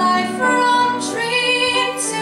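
A young woman singing solo into a microphone, holding long notes that move from one pitch to the next.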